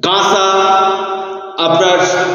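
A voice chanting in long, steady held notes, with a new note starting about one and a half seconds in.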